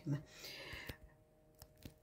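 A spoken word ends, then a soft breath, then three faint clicks and taps spread over the next second: handling noise from the plate of fried torrijas and the camera being moved.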